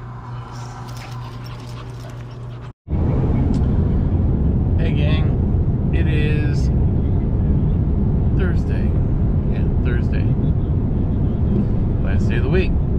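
Steady, loud low rumble of road and engine noise inside a moving pickup truck's cab. It starts abruptly after a short dropout about three seconds in. Before it there is a quieter outdoor background with a low hum.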